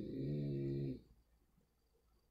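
A man's drawn-out hesitation sound, one low steady pitch held about a second, as he pauses to think, stopping abruptly about a second in.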